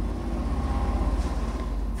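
Low, steady engine rumble with a fast, even pulse, as from a motor vehicle running nearby.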